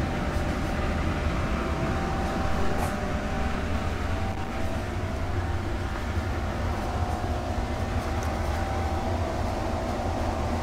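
Steady low drone of greenhouse ventilation fans, with a faint steady tone above the rumble.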